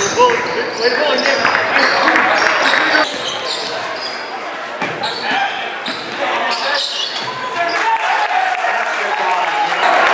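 Live basketball game sound in a large gym: a basketball dribbled on a hardwood court, sneakers squeaking, and players' and spectators' voices echoing in the hall.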